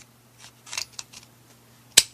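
Hollow plastic toy car launcher being handled: a few light plastic clicks and rubs, then one sharp, loud click near the end.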